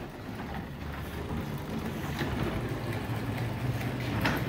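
Chariot iScrub 20 stand-on floor scrubber running as it drives and scrubs across a wet concrete floor: a steady low machine hum with a few faint clicks.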